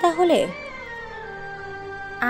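A voice finishes a phrase in a gliding tone, then soft background music holds a few sustained notes through a pause in the talk.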